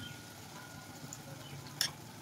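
Faint simmering of small fish in masala in a metal kadhai: the water released by the fish is bubbling away over medium heat while a spoon scoops it up and pours it back over the fish. A single short sharp sound comes near the end.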